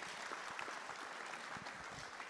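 Audience applauding, steady and fairly faint.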